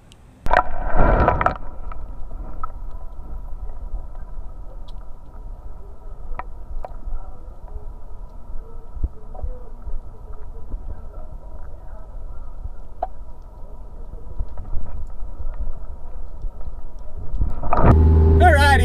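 A short rush of water about half a second in as the camera is dunked, then steady, muffled underwater noise with a few faint, sharp clicks.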